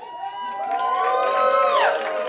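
Several people in an audience cheering, with long held whoops at different pitches that slide down and fade near the end.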